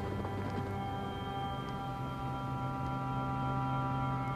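Soft background music: a sustained chord of steady held tones that swells slightly toward the end.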